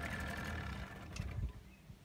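Pontoon boat's motor idling, cutting off about half a second in, followed by a few low thumps.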